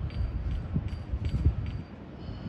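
Wind buffeting the microphone outdoors: an uneven low rumble, with a faint steady high whine underneath and a few light ticks.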